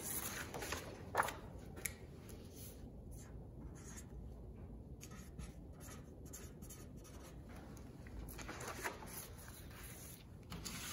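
A marker writing on a sheet of paper on a glass tabletop, a run of short scratchy strokes. The paper slides over the glass near the start and again near the end.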